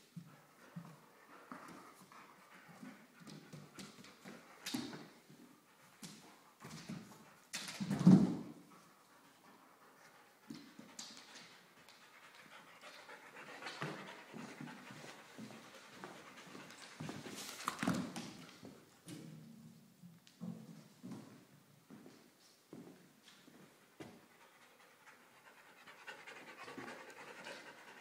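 Belgian Malinois panting as it plays with tennis balls on a tile floor, with scattered short taps and knocks. Two louder thumps stand out, about eight seconds in and again near the middle.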